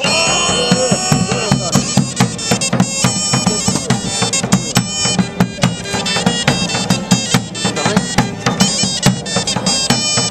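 Medieval-style folk band playing a lively instrumental tune: a reedy wind pipe with a nasal, bagpipe-like tone over fiddle and lute, with regular bass drum beats.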